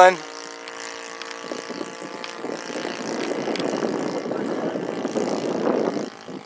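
OS 120 four-stroke glow engine of a radio-controlled Tiger Moth biplane, running steadily in flight overhead. It grows louder over the last few seconds.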